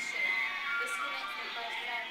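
A young woman's long, high scream from a horror film soundtrack, played through classroom speakers, with background music under it.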